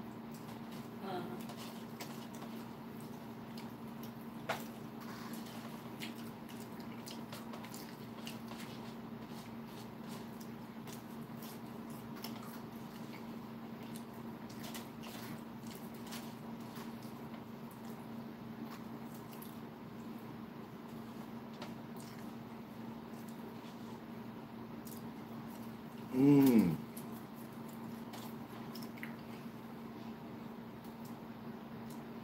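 Faint, wet chewing and mouth sounds of a person eating fish sticks, with scattered small clicks, over a steady low hum. About 26 seconds in, a brief hummed 'mm' from the eater, falling in pitch.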